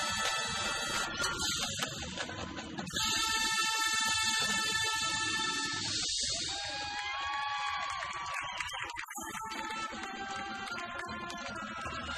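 High school marching band playing its field show, with sustained chords from the winds and a louder full-band entrance about three seconds in.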